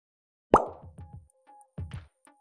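Short audio logo sting: a sharp pop with a quick upward sweep about half a second in, followed by a few fast, fading pulses and brief tones, and a second pop near the end.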